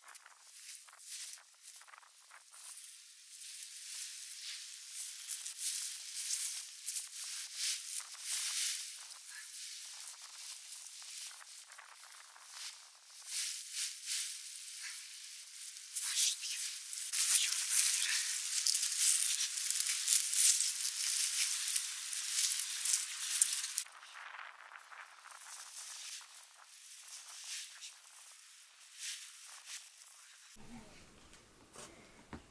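Rustling and crackling of a large heap of freshly cut green fodder plants as it is pressed down and bound with rope by hand. It is loudest for several seconds past the middle, then quieter.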